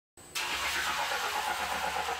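Snowboard base-grinding machine running as a snowboard is fed under its ribbed roller: a steady grinding hiss over a low motor hum, starting about a quarter second in.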